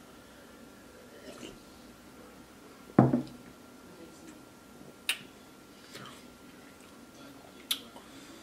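Quiet sounds of a man drinking beer from a glass. About three seconds in there is one loud thump as the glass is set down on a wooden table, and two sharp clicks follow later.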